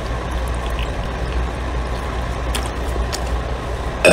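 A man drinking from a plastic water bottle, over a steady low hum, with a few faint clicks.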